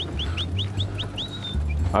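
A small bird calling: a quick run of short rising chirps, about five a second, ending on a brief held note, over a steady low hum.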